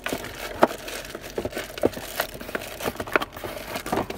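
Clear plastic bag crinkling, with a cardboard box rustling, as a mug wrapped in the bag is pulled out of the box by hand. The crackles come irregularly throughout.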